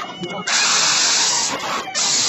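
A child screaming over and over, loud and shrill, breaking off briefly at the start and again just before the end.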